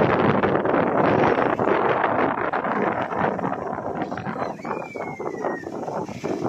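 Wind buffeting the microphone, loud and rough for the first few seconds, then easing. Near the end a thin, high, whistle-like tone glides slightly downward.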